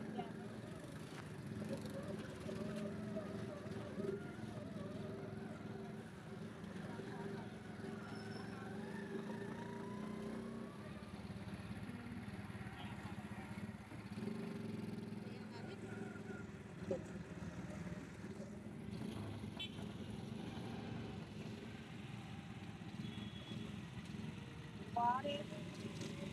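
Auto-rickshaw engine running with a steady low drone, heard from the passenger seat while riding through street traffic.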